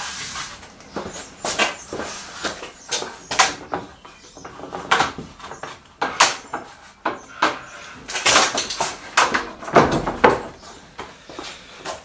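Oak boards knocking and scraping against each other and the table as a board panel is tipped over and laid down flat: a run of irregular wooden knocks and clatter, loudest about eight to ten seconds in.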